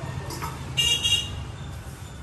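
Copper vessels clinking together as they are handled, with a short high-pitched metallic ring about a second in, over a steady low hum.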